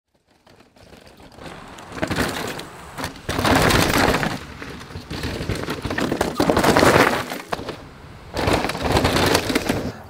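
Mountain bike tyres rolling and skidding over loose, dry dirt and rock: several passes, each a swell of gravelly crunching with clicks and rattles.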